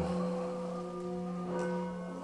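An old Tibetan singing bowl filled with water, its outside rubbed with a suede-covered wooden mallet pressed firmly against the metal. It sings a steady humming tone with several overtones, which brightens again about one and a half seconds in. The collector believes the bowl is made of meteoric iron.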